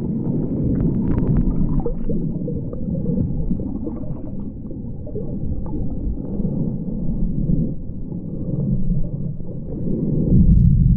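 Muffled underwater sound picked up by a submerged action camera: a steady low rumble of water moving around the housing, with faint scattered clicks in the first couple of seconds.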